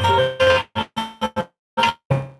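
Live bhajan music: steady held instrumental tones with plucked strings, cutting in and out in short pieces with abrupt silent gaps, the longest a little after the middle.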